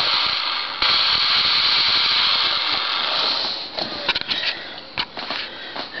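Twin electric motors and propellers of a foam RC model plane running on a ground test. The whirr starts suddenly about a second in, runs steadily, then dies away over the last couple of seconds, with a few light clicks.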